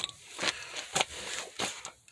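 Several light knocks and clicks, about five scattered irregularly over two seconds.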